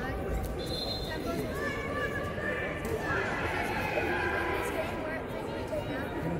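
Indistinct chatter of many voices from spectators and players in a large indoor sports hall.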